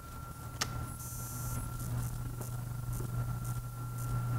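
Room tone in a pause between speech: a steady low electrical hum with a thin steady whine above it, a single sharp click about half a second in, and a brief high hiss about a second in.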